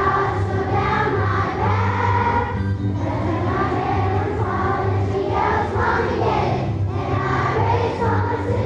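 Children's choir singing together over an instrumental accompaniment with a steady, pulsing bass; the singing breaks briefly between phrases about three and seven seconds in.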